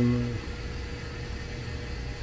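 A steady low mechanical hum with a thin steady tone running through it. There are no strokes or changes in it.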